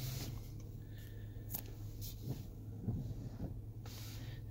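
Quiet car cabin: a steady low hum with a few faint, brief clicks, likely taps on the infotainment touchscreen.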